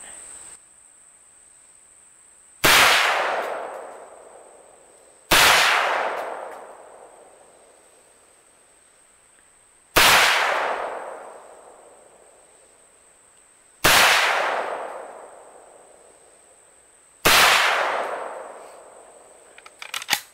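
Five shots from an Auto Ordnance M1 Carbine in .30 Carbine, fired a few seconds apart at an uneven pace, each followed by a long echo that dies away over about two seconds.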